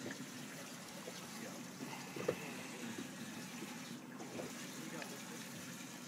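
Steady, quiet noise of water lapping against a small boat's hull, with a few faint clicks.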